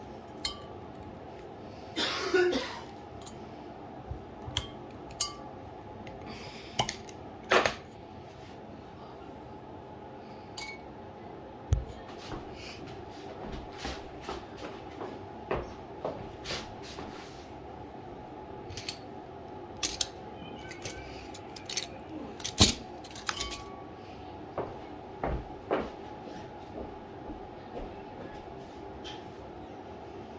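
Metal lever corkscrew pulling the cork from a wine bottle, with a squeaky rasp about two seconds in, then scattered sharp clicks and clinks as the corkscrew and cork are handled and set down. A steady low hum runs underneath.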